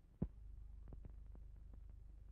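Faint steady low hum with scattered soft clicks and one sharper click about a quarter of a second in: the background noise of an old film soundtrack.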